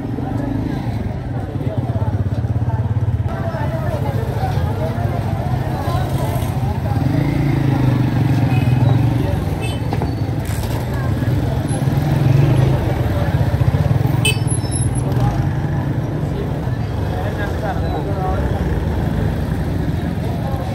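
Busy market street ambience: crowd chatter with motorcycle engines running close by through the crowd, growing louder twice in the middle.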